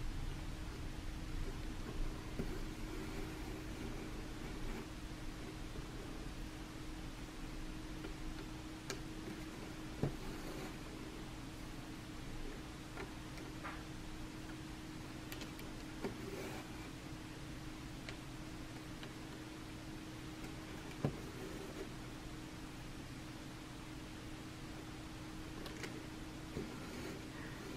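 Faint, steady low hum and hiss of a quiet room, with a few soft ticks and rustles of a needle and embroidery floss being pulled through cross-stitch canvas.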